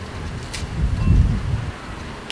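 Wind gusting on the microphone: a low, uneven rumble that swells about half a second in and peaks around a second, with a single sharp click at its start.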